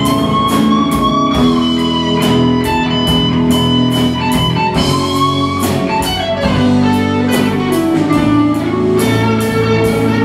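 Live rock band playing an instrumental passage: electric guitars and keyboard over a drum kit keeping a steady beat. A lead line holds long notes that bend up and down in pitch.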